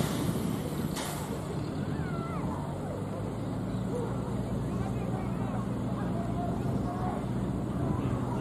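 Outdoor ambience from a field microphone: a steady low hum with faint distant voices, and two short clicks within the first second.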